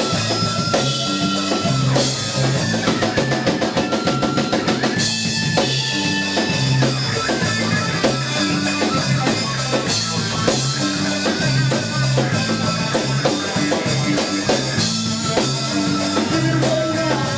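Live band playing: a drum kit keeping a steady beat under electric guitar and a stepping bass line.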